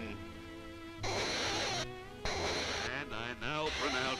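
Cartoon soundtrack: orchestral music with a man's harsh coughing starting about a second in, in two rough bursts.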